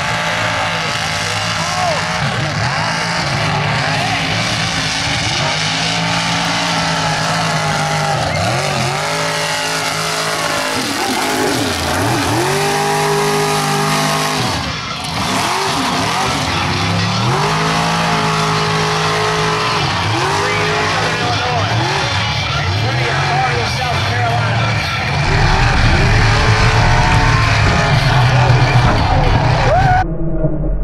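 Mega truck engines revving hard again and again in a mud pit, the pitch climbing and falling in repeated surges. Near the end the engine sound turns deeper and louder.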